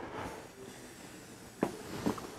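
Quiet room tone in a small room, with one brief sharp sound about one and a half seconds in.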